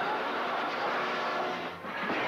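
Metal trolleys rattling and clattering as they are pushed along at speed, a dense steady noise that dips briefly near the end.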